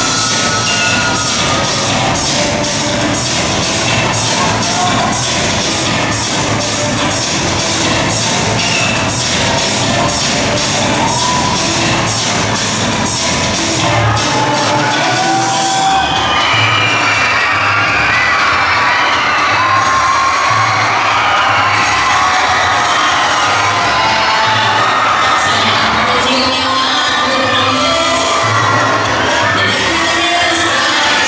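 Dance music with a steady beat and an audience cheering and shouting over it. The cheering and shouting grow louder about halfway through.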